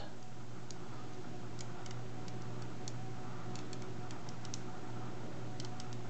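Small neodymium magnet spheres clicking together in light, irregular ticks as rings of balls are joined into a tube. A steady low hum runs underneath.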